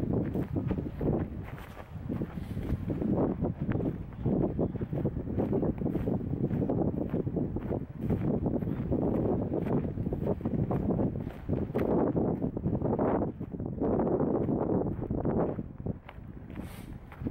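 Wind buffeting the microphone in uneven gusts, a low rumbling noise that swells and drops every second or so.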